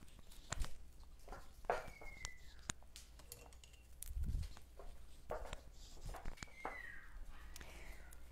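Faint footsteps and scattered clicks and knocks of someone moving about fetching a brush, with a puppy giving two short falling whines, about two seconds in and again about six and a half seconds in.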